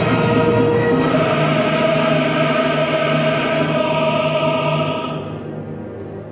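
Opera chorus and orchestra holding loud sustained chords, moving to a new chord about a second in and fading near the end.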